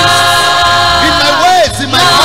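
Youth choir singing a gospel song in held chords, with one voice bending its pitch above the chord around the middle.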